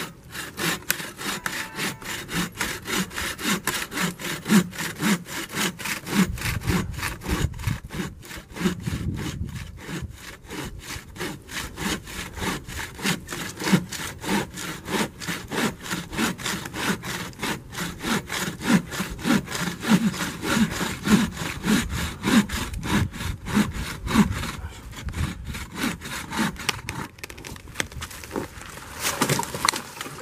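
Bow saw cutting through a standing aspen trunk in steady back-and-forth strokes, about two a second. Near the end the trunk cracks as it gives way and the tree comes down.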